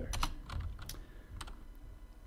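Computer keyboard keys being pressed: a handful of separate keystrokes in the first second and a half as new lines are opened in the code.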